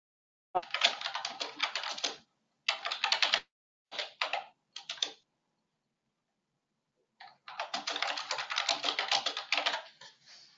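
Typing on a computer keyboard: bursts of rapid keystrokes with pauses between, the longest run near the end.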